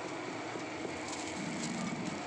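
Steady background hubbub of a busy outdoor night market, an even wash of noise with faint distant voices.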